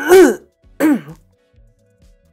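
A man clearing his throat in short, loud bursts during the first second, over faint background music.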